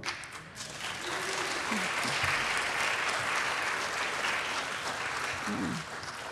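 Congregation applauding, building up about a second in and tapering off near the end.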